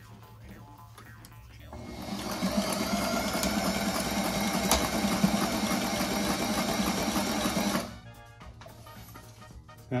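Sailrite Ultrafeed LSZ walking-foot sewing machine stitching through two layers of waxed canvas. It starts about two seconds in, builds up over a second, runs steadily for about six seconds and stops abruptly, going through the doubled canvas without strain.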